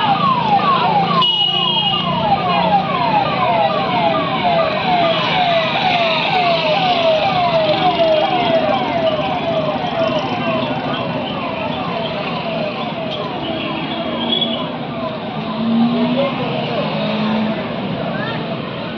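An electronic siren sounding a tone that falls again and again, about three sweeps a second, fading out about two-thirds of the way through.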